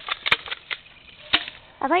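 Spring airsoft shotgun being worked and dry-fired: about half a dozen sharp, irregular plastic clicks and clacks, the loudest about a third of a second in. The gun is out of ammo, so nothing is fired.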